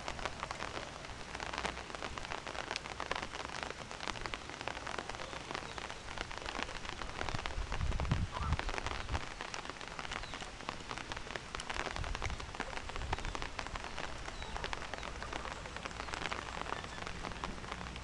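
Rain falling: a steady hiss dotted with many small raindrop ticks. Two brief low rumbles come about eight and twelve seconds in.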